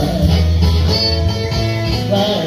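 Live band playing an instrumental stretch of a blues-style song with no singing: guitars lead over held bass notes, with a drum kit behind.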